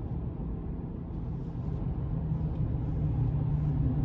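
Steady low rumble of engine and road noise heard inside a moving vehicle's cabin in slow traffic, with a hum that grows slightly louder in the second half.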